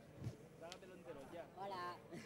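Indistinct talking from several people in a crowded hall, no single voice clear, with a brief tick about halfway through.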